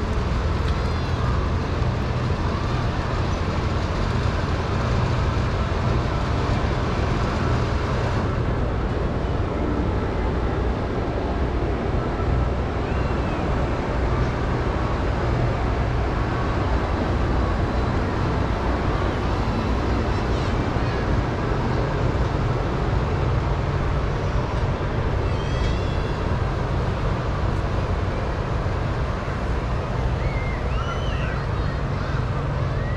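Steady wind rumble on the microphone over open-air ambience, with a few faint high chirps now and then.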